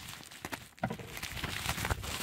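Plastic bubble-wrap packaging crinkling and crackling as it is cut open with scissors and pulled apart by hand, an irregular run of small crackles with a sharper crack about a second in.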